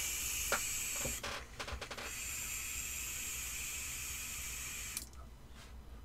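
An Aspire Nautilus X mouth-to-lung vape tank, fired at 17 watts, drawn on and the vapour breathed out in a big cloud: a breathy hiss, a few quick crackles about a second and a half in, then a longer hiss that stops suddenly about five seconds in.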